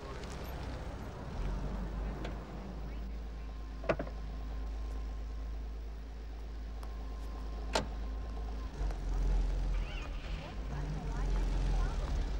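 A low, steady rumble with two sharp clicks about four seconds apart: a Porsche 911's door latch opening and the door shutting.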